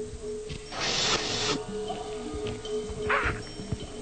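Background music: a steady held note with two soft hissing swells, one about a second in and a shorter one near the three-second mark.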